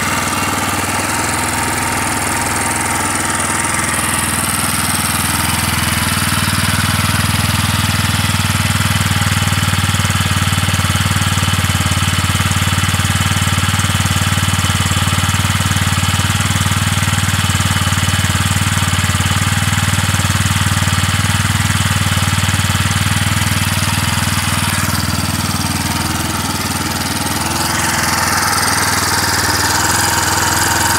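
Minsk X250's air-cooled single-cylinder engine idling steadily. At nearly 700 km of break-in it runs smoother and freer, with a nicer sound.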